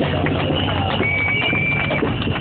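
Outdoor sound of a marching crowd, with many irregular clacking knocks and, from about a second in, a steady high tone held to the end.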